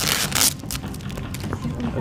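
A short crinkling, rustling burst from a taped egg-drop package being handled, in the first half second, followed by a few light clicks, with voices chattering in the background.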